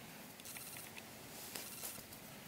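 Faint rustling and a few light ticks of hands handling faux sheepskin doll boots and a doll on a glass tabletop, over a steady faint hiss.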